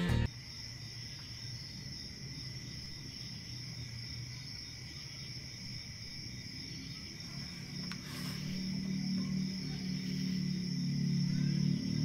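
Crickets chirring steadily in a high, even drone, the background of a quiet night. A low, sustained music drone fades in about two thirds of the way through, after music cuts off sharply at the very start.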